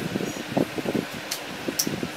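Hands handling paper-wrapped PVC pipe tubes on a tabletop: irregular soft knocks and rustles, with two short, sharp clicks in the second half, over a steady background hiss.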